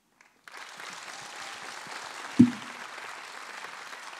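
Audience applause that starts about half a second in and continues steadily. A single brief, loud, low sound cuts through it about two and a half seconds in.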